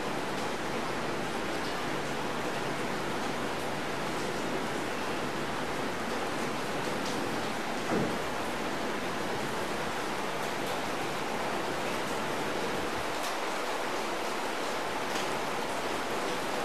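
Steady even hiss with faint taps and scratches of chalk drawing on a blackboard, one a little louder about eight seconds in.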